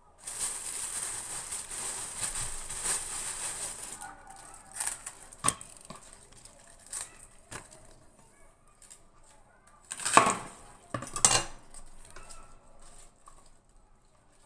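Kitchen food-prep handling sounds: a hissy rustle for about four seconds, then scattered clicks and two loud clattering knocks of utensils or dishes on the counter, about ten and eleven seconds in.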